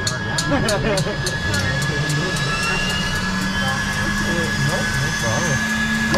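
Pratt & Whitney turboprop engine being started: a steady ticking about three times a second, a whine rising slowly in pitch, and a low hum that comes in about halfway through and holds as the engine spools up.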